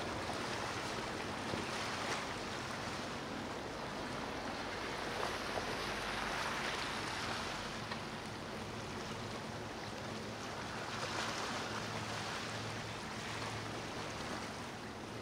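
Rushing water and surf from boat wakes: a steady hiss that swells about six seconds in, with a faint low steady hum underneath.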